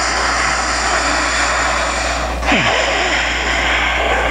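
A woman's deep breathing, heard loud and close: one long breath in, then a long breath out starting about halfway through.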